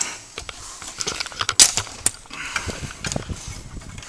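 Irregular metallic clicks and knocks as a steel tow bar with a trailer ball coupler is lifted and handled, the sharpest knock about a second and a half in.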